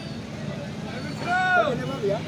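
Busy open-air vegetable market: steady background noise of crowd chatter and traffic, with one voice calling out briefly in a rising then falling pitch past the middle.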